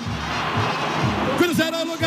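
A stadium crowd roaring after a goal, a steady noisy roar that fills the first second and a half. After that an excited male commentator's voice comes back in.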